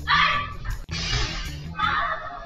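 A woman's high-pitched, shrieking laughter in three short bursts, over background music.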